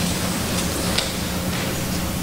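A steady rushing noise with a faint low hum underneath.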